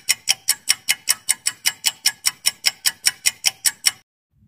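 Ticking-clock sound effect for a quiz countdown timer: sharp, even ticks at about five a second, marking the seconds left to answer.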